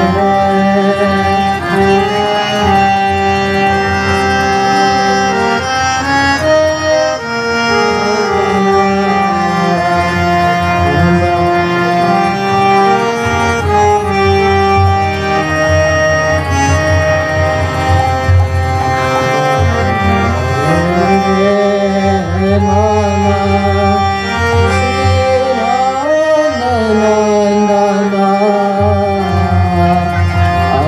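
Harmonium playing a sustained melody in Indian style, with a male voice singing ornamented, sliding lines over it.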